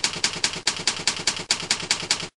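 A rapid, even run of sharp clicks, about five a second, like typewriter keystrokes.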